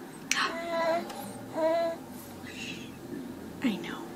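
A baby vocalizing: two high, drawn-out squealing coos in the first two seconds.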